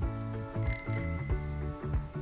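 Light background music with a single bright bell-like chime about half a second in, ringing out for about a second: an on-screen sound effect.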